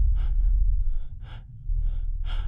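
A man gasping for breath inside a spacesuit helmet, a run of short, quick breaths over a steady low rumble, the laboured breathing of someone running short of oxygen.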